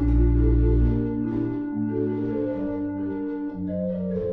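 Ryde & Berg pipe organ playing sustained chords in several parts, the harmony moving about once a second over a deep bass line.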